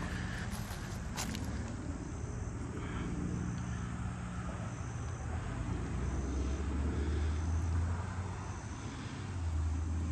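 Outdoor background: a steady low rumble with a faint high insect chirp repeating about once a second, and a single click about a second in.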